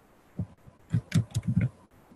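Soft keystrokes on a computer keyboard: one tap, then about five quick taps in the second half.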